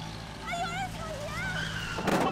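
A woman shouting 'Robbery!' in high, strained cries, the last one drawn out and falling, over a steady low hum from an idling car engine.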